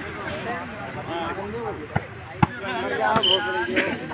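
A volleyball being struck by players' hands during a rally: a few sharp smacks, the loudest about two and a half seconds in. Spectators' chatter and shouts run underneath.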